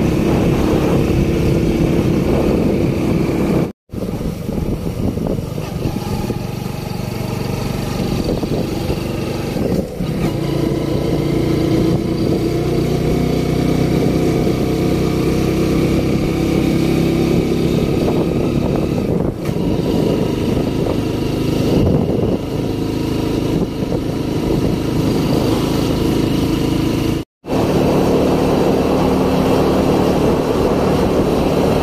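Small motorcycle engine running steadily under way, with road and air noise, its note shifting a little as the bike rides. The sound cuts out completely for an instant twice, about four seconds in and again near the end.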